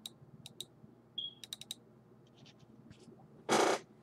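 Scattered small clicks in a few quick clusters, as from a computer mouse being clicked. Near the end comes a short rush of hiss-like noise, the loudest sound.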